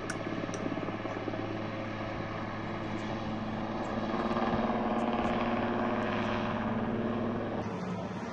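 Helicopter flying low overhead, its rotor beating steadily over the engine, growing louder about halfway through as it comes closer. It is a firefighting helicopter on a water-carrying run.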